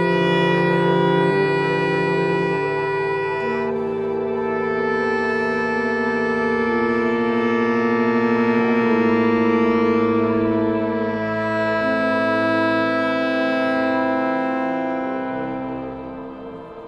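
Pipe organ holding long, steady chords whose notes change every few seconds, in slow contemporary concert music.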